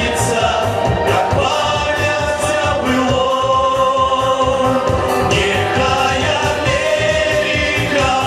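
A group of men singing a song together into microphones over backing music with a steady beat, with long held notes.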